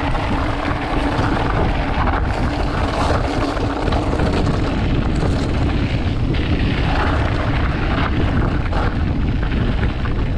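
Wind rushing over the microphone while a mountain bike rolls fast down a loose dirt and gravel track, with steady tyre noise and a few light rattles.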